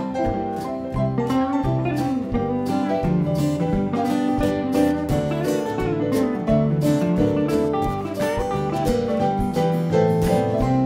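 Live blues band playing an instrumental passage of the song with no singing: electric guitar, acoustic guitar and keyboard over a steady beat.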